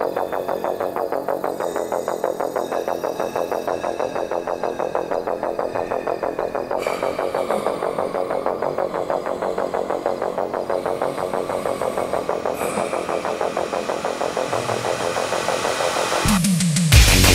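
Electronic music intro built on a fast, even synth pulse of about four to five beats a second. A brighter layer comes in about seven seconds in.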